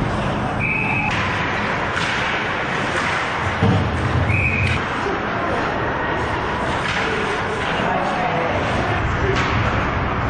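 Ice hockey game sound in a rink: a steady din of skating, play and indistinct voices, with two short high-pitched tones about half a second in and again about four and a half seconds in, and a thud near the middle.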